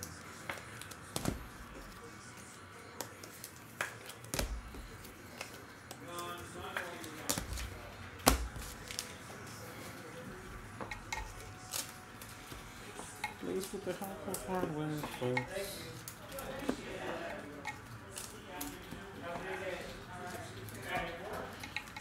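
Baseball trading cards being handled at a table: scattered light clicks and taps of card stock, the sharpest about eight seconds in. A faint voice murmurs through the second half.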